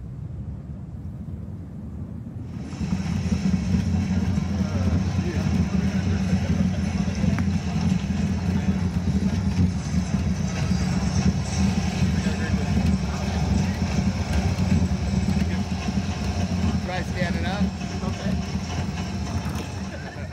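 Roller-coaster ride sound from a VR simulation played through subwoofers: a heavy, steady low rumble that swells about two seconds in and holds, with voices faintly underneath.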